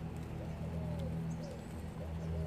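A bird calling: a repeated low cooing call, about five short arching notes in two seconds, over a steady low hum.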